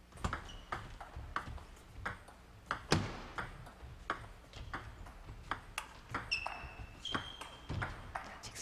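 Table tennis rally: a celluloid-style plastic ball clicking back and forth off the rubber bats and the table, about three sharp pings a second. Two short, high squeaks come near the end.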